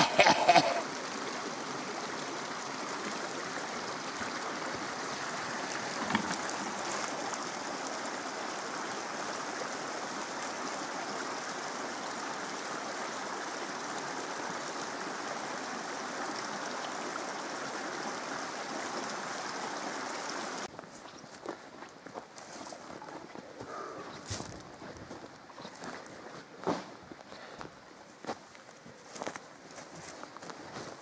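A steady rushing noise, like running water or wind, for about the first twenty seconds, which cuts off suddenly. After that come footsteps on a forest trail, with scattered irregular clicks and scuffs.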